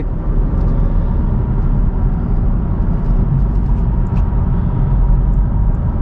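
Steady road and tyre rumble with engine hum, heard inside the cabin of a 2022 Honda Civic Touring driving at road speed.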